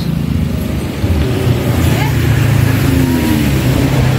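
A motor vehicle engine running steadily close by, getting a little louder about a second in.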